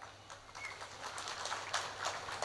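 A pause in amplified speech: faint background noise with a steady low hum, one short high chirp about a third of the way in, and a few faint ticks.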